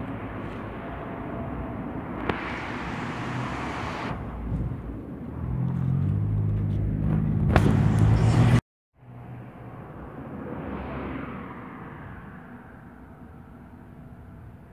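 Outdoor street sound with road traffic: a car passes, loudest about eleven seconds in. Before that, a louder low rumble with a steady hum builds and cuts off abruptly about eight and a half seconds in.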